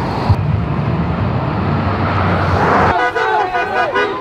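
Road traffic driving past: a car's engine and tyre noise swell as it passes, loudest about two and a half seconds in. It then gives way abruptly to the overlapping voices of a marching crowd.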